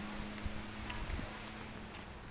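A low steady hum with a couple of faint clicks over outdoor background noise; the hum stops near the end.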